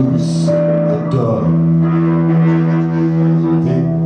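Live experimental music: electric guitar with a low sustained drone that settles into a steady held tone about a second and a half in.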